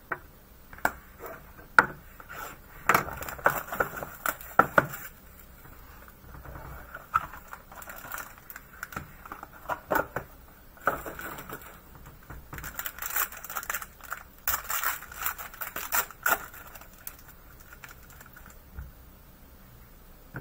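Hands opening a sealed cardboard trading-card box: a run of sharp clicks and knocks of card stock, then a foil pack wrapper crinkling and tearing open.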